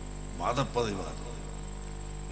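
A man's short spoken phrase about half a second in, over a steady high-pitched whine and a low hum that continue in the pauses.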